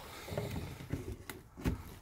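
Light handling noises with a couple of sharp plastic clicks in the second half, as a clear plastic propagator lid and seed tray are moved.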